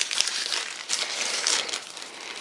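Paper and a thin plastic bag crinkling as hands fold and handle them, an irregular run of small crackles.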